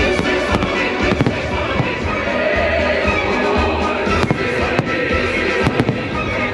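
Aerial fireworks bursting over loud show music, with several sharp bangs scattered through it and a quick cluster of bangs near the end.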